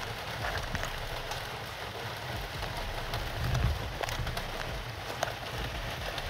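Faint rustling and a few light clicks of a wire's spade terminal being worked into a slot in a car's interior fuse box, over a steady hiss.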